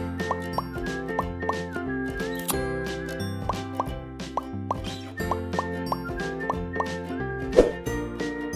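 Bouncy children's-style background music with a string of short, rising 'bloop' plops, about two a second. A louder pop comes near the end.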